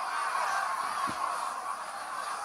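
Noise of a large concert crowd, a steady din of many distant voices, with a brief low thump about a second in.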